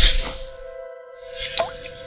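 Electronic intro sting for an animated logo. It opens with a loud whoosh and hit, then a held synth tone, with a short rising blip about a second and a half in.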